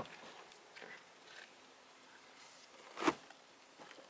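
Small vinyl first aid kit being handled and pressed by hand onto the trunk's carpeted wall to fasten its velcro: faint rustling, then a single short thud about three seconds in.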